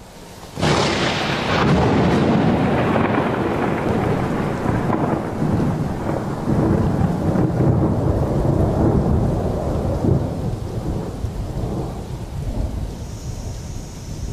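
Thunder: a sudden loud clap about half a second in, then a long rolling rumble that slowly dies away.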